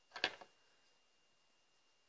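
A brief clatter of a few quick clicks, about a quarter-second in, as a small tool or part is set down on the workbench.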